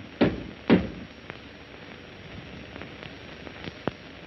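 Two sharp thumps about half a second apart just after the start, then the steady crackly hiss of an old film soundtrack with a few faint clicks.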